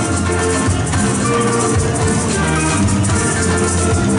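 Live Trinidadian parang music from a small band: steel pans and strummed acoustic guitar over bass guitar, with a steady maraca rattle.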